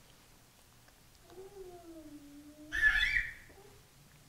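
Faint, high-pitched, voice-like sound. A drawn-out, slightly falling tone begins about a second in, then a short louder, brighter cry comes about three seconds in, over quiet room tone.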